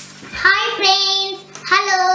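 A young girl's voice singing in a drawn-out, sing-song way, holding two long steady notes.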